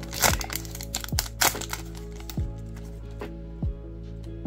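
Foil trading-card booster pack being torn open and crinkled by hand, with sharp crackles about a quarter second in and again about a second and a half in, over background music with a steady beat.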